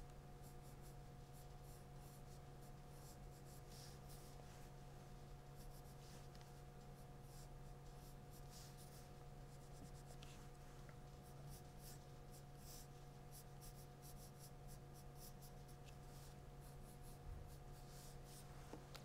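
Pencil scratching on drawing paper in many short, quick strokes as braid strands are sketched, faint, over a steady low hum.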